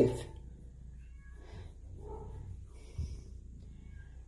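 A domestic cat purring quietly as she is stroked, settling down after being vocal, with a faint short meow about two seconds in. A soft tap comes at about three seconds.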